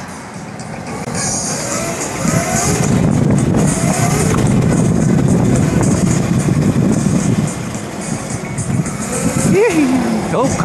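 Wind rush and road noise on the microphone of a rider's action camera as an e-bike rolls down the road, swelling over the middle few seconds. Faint music and voices run underneath.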